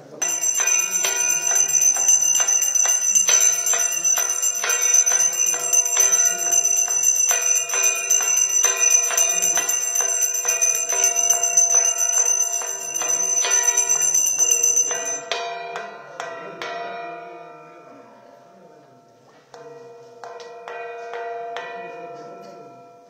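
A brass puja hand bell rung rapidly and continuously, about three strokes a second, with a bright ringing tone. The ringing stops about 15 seconds in and dies away, then starts again more quietly near the end.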